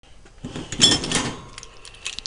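Handling clatter: a metal camper-shell clamp being picked up and moved by hand, with a cluster of knocks and rubbing, loudest a little under a second in.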